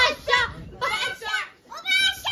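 Excited, high-pitched shouting by a small girl and a young woman, in several short bursts with a brief lull near the end.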